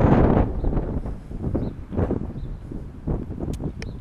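Wind buffeting an outdoor action-camera microphone: an uneven low rumble, strongest in the first second, with a few faint clicks near the end.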